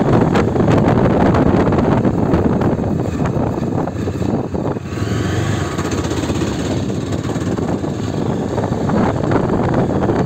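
Yezdi Adventure's single-cylinder engine running on the move with wind rush over the microphone, the motorcycle easing off and slowing on a rough road.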